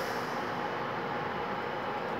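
A steady, even hum and hiss with no distinct clicks or tones, no louder than the room's background noise.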